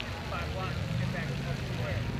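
Background chatter of a crowd outdoors, several voices at once with no clear words, over a low rumble that swells toward the end.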